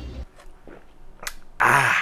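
A man's short, loud open-mouthed yell near the end, after a quiet stretch with a few faint clicks.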